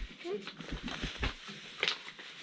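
Faint, indistinct voices in a small room, with a brief rustle near the end.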